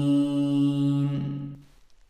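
A man's Quranic recitation holding the long final vowel of the surah's last word on one steady pitch, which stops a little over a second in and fades away.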